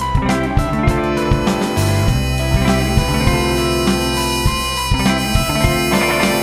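A live indie rock band playing an instrumental passage without vocals. A drum kit keeps a steady beat under electric guitar and sustained keyboard tones.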